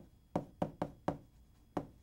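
Chalk striking a chalkboard while words are written: about six sharp taps at an uneven pace.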